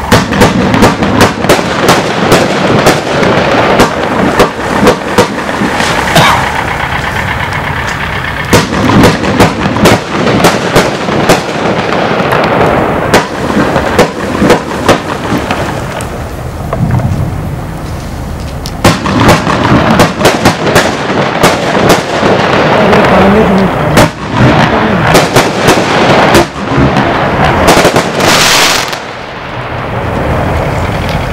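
Bestseller 'Big Show' compound firework cake firing: many loud shots and bangs in quick succession, with a short hiss near the end before it stops.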